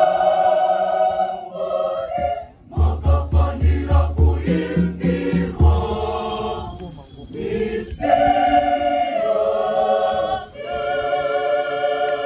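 Mixed choir singing in parts: long held chords, then a stretch of short clipped notes over a run of low beats about three a second, then held chords again.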